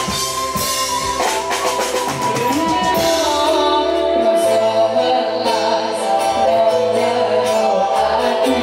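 Live dangdut koplo band music: a woman's singing voice over melody instruments and drums, with a quick run of drum strikes about two to three seconds in.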